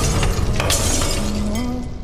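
Glass of a picture frame shattering on the floor: a crash, a second crash a little under a second in, and glass shards tinkling as they scatter. A sung ballad melody comes in over it just past the middle.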